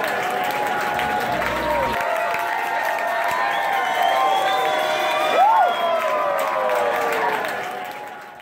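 Large concert crowd cheering and clapping, with many voices shouting and whooping over one another, fading out near the end.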